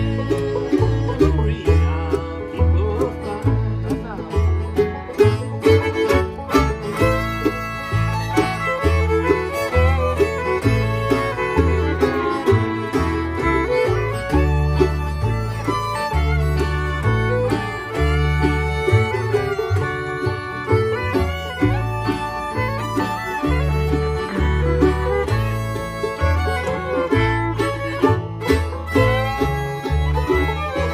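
Acoustic bluegrass jam: two fiddles playing the melody together over an upright bass stepping between notes and strummed acoustic guitar.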